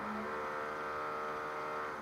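Electric drill running steadily, a constant whine that fades away near the end.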